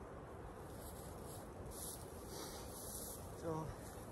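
Faint outdoor background noise with a few soft rustling hisses as a person shifts over dry grass beside the carcass, and a short voiced 'hm'-like sound a little after three seconds in.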